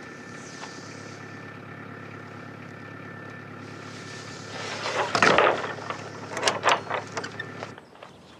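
A wooden barn door scraping open about five seconds in, the loudest sound, followed by several sharp knocks and clatters of the door and latch. A steady hum runs underneath and cuts off just before the end.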